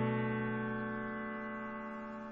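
Background music: one sustained keyboard chord, sounding like an electric piano, holding and slowly dying away.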